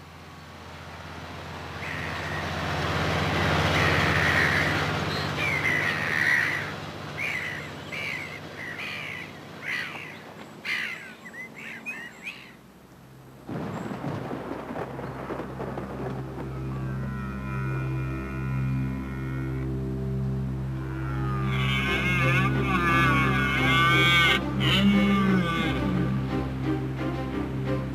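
Tractor engine running steadily while ploughing, growing louder over the first few seconds, with gulls calling over it. About halfway through this gives way to music with long held notes.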